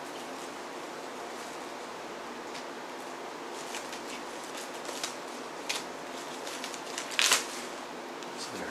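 Faint rustling and light clicks of a CD case and its paper packaging being handled, over a steady room hum. The loudest is a short crackle near the end.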